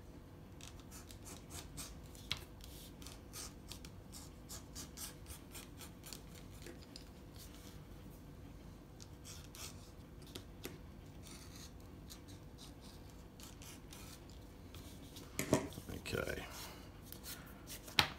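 Edge beveling tool shaving the corner off the edge of a leather belt loop: a run of faint, quick scraping cuts, one after another. Near the end a sharp tap and louder handling noise as the strip is picked up.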